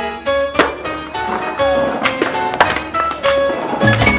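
Music: an instrumental passage with plucked strings and sharp percussive hits throughout.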